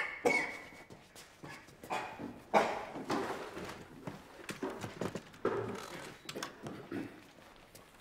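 Irregular footsteps, knocks and scrapes as a man walks off and pulls out a wooden café chair to sit down in it.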